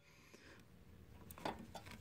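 Near silence, with a few faint short clicks in the second half.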